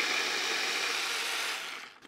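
Hand-held immersion blender running steadily in a tall cup, puréeing peas into a green paste, then winding down and stopping shortly before the end.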